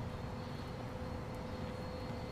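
Steady low rumble of outdoor city background noise, with a faint steady hum over it.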